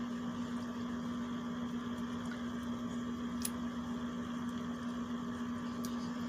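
A steady low hum in the room, with a faint click about three and a half seconds in and another near the end.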